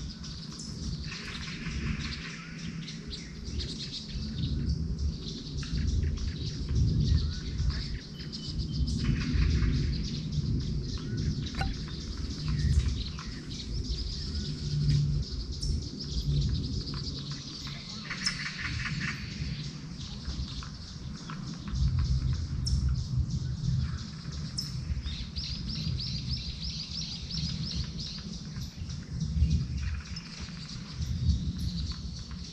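Songbirds singing and calling in the early-morning dawn chorus: many short chirps, with rapid trilled phrases around the middle and again later on. Under the birds runs a low rumble that swells and fades.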